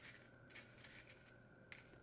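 A few faint, short clicks of one-inch metal nails stirred by fingers in a small pot.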